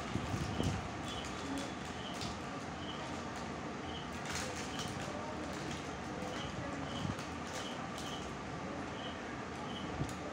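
Eating by hand: fingers mixing rice on a metal plate, chewing and scattered small mouth clicks, over a steady background hiss.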